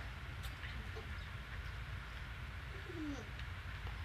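Quiet room tone with a low steady hum, a few faint clicks, and a short faint falling sound about three seconds in.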